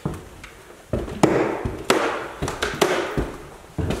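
Footsteps climbing bare wooden stairs: a run of hollow footfalls and thuds on the treads, several a second, starting about a second in.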